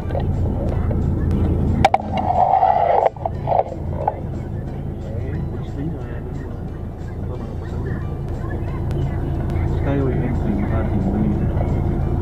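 Steady low engine and road rumble heard from inside a car moving in city traffic, with a short higher-pitched sound about two seconds in.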